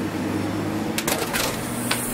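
A door latch clicking a few times, about a second in, over a steady low hum.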